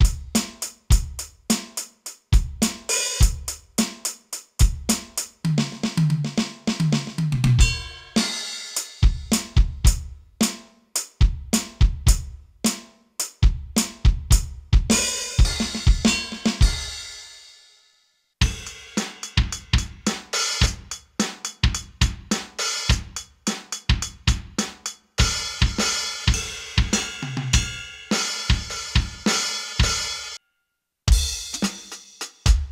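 Vangoa VED-B10 electronic drum kit's built-in drum samples, heard straight from the module's output: a steady groove of kick, snare, hi-hat and cymbals, with a run of low tom hits about six seconds in. About fifteen seconds in, a cymbal is left ringing and fades out; the playing stops briefly, then picks up again to the end.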